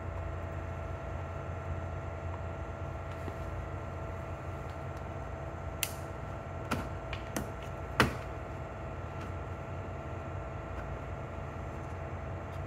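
Plastic pry tool working at a plastic interior cover on the inside of a car door, with a few short sharp clicks about six to eight seconds in, the loudest near eight seconds, as the cover's clips are prised loose. A steady hum runs underneath.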